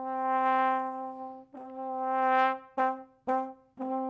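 Sampled trombone from Native Instruments' Valves library playing a programmed phrase on one pitch: a long swell that rises and fades, a shorter rising crescendo, two short staccato notes, then a held sustained note near the end.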